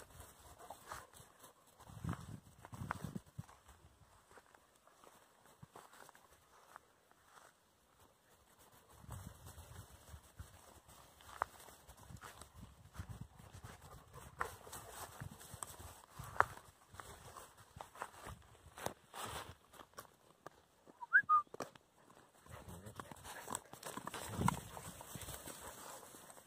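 Weimaraner puppies and an adult Weimaraner moving and scuffling in dry grass close to the microphone: scattered rustles, light footfalls and clicks, with stretches of low rumbling bumps from the microphone being jostled.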